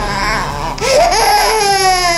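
Baby crying in long wails, with a short break just before a second wail that begins about a second in and slowly falls in pitch.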